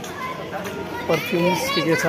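Passers-by talking on a busy pedestrian street, with high-pitched children's voices calling out more loudly from about a second in.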